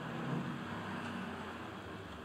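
Model railway passenger coaches rolling past on track: a steady rumble of wheels on rails, a little louder about half a second in.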